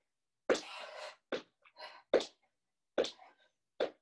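A woman's short, forceful exhalations with exercise effort: about six sharp breaths at irregular spacing, the first, about half a second in, the longest.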